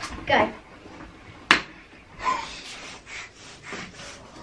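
A dart striking the spinning mystery-wheel dartboard: one sharp knock about a second and a half in, among girls' breathy laughs and gasps.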